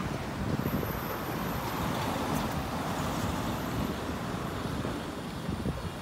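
Steady street traffic noise from passing vehicles on a busy city road.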